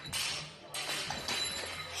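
A barbell loaded with bumper plates crashing to the floor as the lifter falls, with a noisy clatter.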